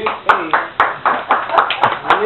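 A small group of people clapping, about three to four claps a second, with voices exclaiming over the applause.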